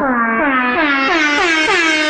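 Air-horn sound effect blaring in quick repeated blasts, about three a second, each dipping in pitch at its start. The blasts grow brighter toward the end.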